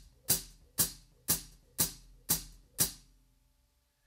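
Hi-hat cymbals clapped shut by the left foot on the hi-hat pedal: six even foot-stroke "chicks" about two a second, a steady quarter-note pulse, stopping about three seconds in.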